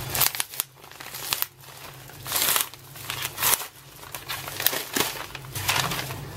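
A padded kraft mailer opened by hand: its flap pulled and torn open and the white paper wrapping inside rustling and crinkling, in several irregular bursts, the loudest about two and a half seconds in.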